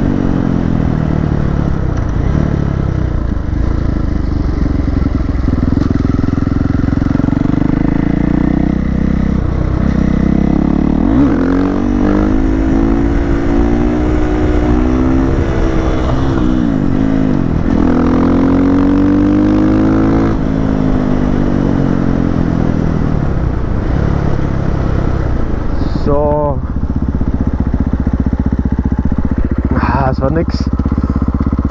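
Husqvarna FE 501 single-cylinder four-stroke engine with an FMF full exhaust, heard while riding. The note is steady, and in the middle stretch it falls and rises in pitch several times as the throttle is shut and opened again.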